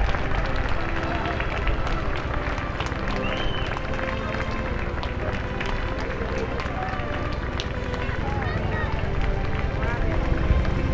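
Outdoor crowd of spectators chatting indistinctly, over a steady low rumble.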